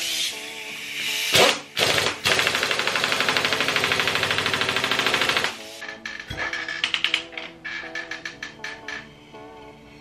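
Pneumatic impact wrench hammering on a nut on a pit bike engine. It gives two short bursts, then runs for about three seconds before stopping. Background music plays throughout.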